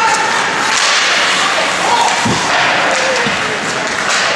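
Ice hockey play in a rink: a few sharp clacks of sticks and puck and a heavier thump about two seconds in, over steady rink noise, with faint shouting voices.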